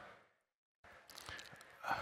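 A man's faint breath, drawn in close to his microphone before he goes on speaking, after a brief stretch of dead silence.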